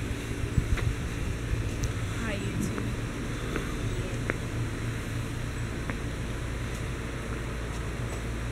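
Steady low hum of outdoor background noise, with faint distant voices and a few light clicks.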